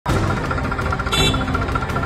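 Diesel tractor engine running with a fast, even knocking beat, with a brief higher-pitched sound about a second in.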